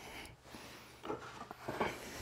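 Faint rustling and handling noises from hands working in behind a scooter's plastic body panels, with a couple of soft knocks about a second in and near the end, over a low steady hum.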